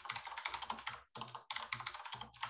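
Typing on a computer keyboard: a quick run of key clicks, with a short pause about a second in.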